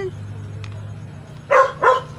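A dog barking twice in quick succession, two short loud barks about a second and a half in, over a low steady hum.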